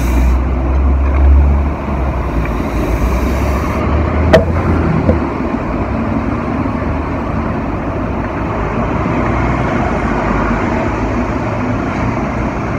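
City street traffic noise, with a low vehicle engine rumble that fades out about five seconds in, then a steady traffic hum. A single sharp click about four seconds in.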